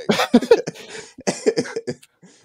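Men laughing hard, in two clusters of loud, breathy bursts.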